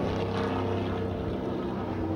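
NASCAR stock car's V8 engine running steadily on the speedway, heard through a phone video's microphone.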